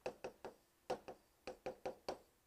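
Faint, uneven taps of a stylus pen tip on the glass of an interactive display while handwriting: about eight light clicks as the characters are written.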